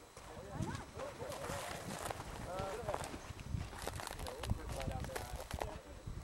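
Indistinct voices of people talking, mixed with irregular clicks and knocks of footsteps and rustling through dry scrub brush.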